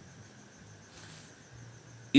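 Quiet background noise in a pause: a faint, steady high-pitched trill over a low hum.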